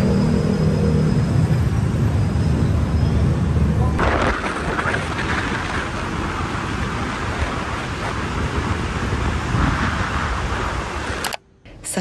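Low rumble of dense city traffic. After a cut about four seconds in, it gives way to wind rushing over the microphone and road noise from a moving motorbike. The sound cuts off abruptly near the end.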